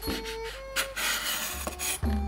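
Chef's knife slicing through a bundle of fresh green beans onto a wooden cutting board, crisp crunching cuts about a second in and again near the end, with a knock of the blade on the board. Background music plays underneath.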